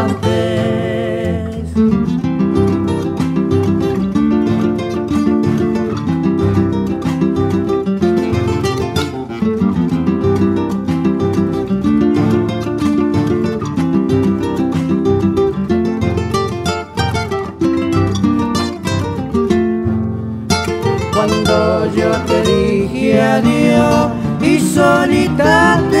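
Instrumental guitar interlude of a Cuyo tonada: two acoustic guitars strumming and picking chords over a guitarrón bass line. The voices come back in near the end.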